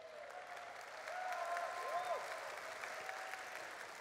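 Studio audience applauding, with a few voices calling out over the clapping between about one and two seconds in.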